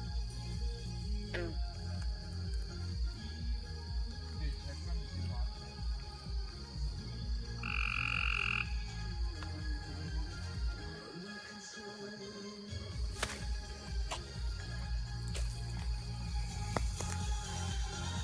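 Frogs croaking in a low, pulsing chorus, with background music over it. A short high tone sounds about eight seconds in.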